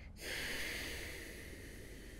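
A man's sudden heavy breath out through the nose, fading over about a second.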